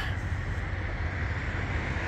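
Steady outdoor background noise: a low rumble with an even hiss above it and no distinct events.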